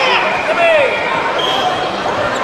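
Several voices talking and calling over one another in a large echoing hall, with one voice calling out in a falling pitch just under a second in.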